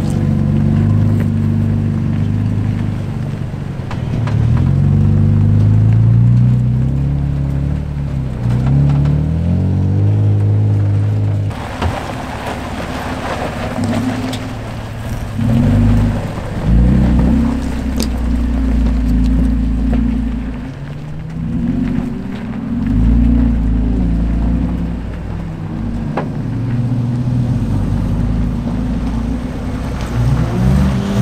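Toyota Tacoma pickup engines revving up and down again and again as the trucks crawl up a rocky ledge, with a deep rumble and a few sharp knocks from the rocks.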